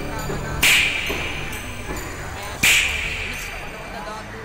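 Two sharp, bright strikes about two seconds apart, each with a short ringing tail, over a low soundtrack bed.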